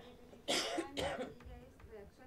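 A person coughing twice into a microphone, two short harsh coughs about half a second apart, over faint voices.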